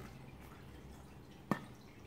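Quiet room background with one sharp click about one and a half seconds in, from handling a gas mask filter canister.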